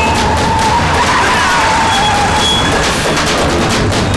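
Loud action-film background score with rapid percussive hits throughout, with the sound of a moving car mixed under it.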